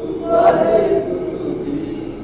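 A group of voices chanting and singing together, Sikh devotional singing, the pitches wavering and overlapping.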